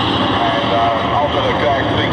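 V8 dirt-oval race car engines running with a steady drone, with a voice talking over them.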